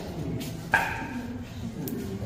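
Indistinct chatter of several people, with one short, sharp yelp a little under a second in.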